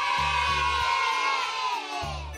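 A crowd of children cheering together in one long held cheer that sinks and fades near the end, over background music with a repeating bass line.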